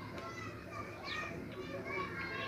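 Small birds chirping in quick, short calls that sweep downward, repeated throughout, with faint voices in the background.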